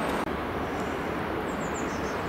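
Steady rush of a shallow river flowing over stones, briefly cut off by an edit about a quarter second in, then going on a little quieter; faint bird chirps near the end.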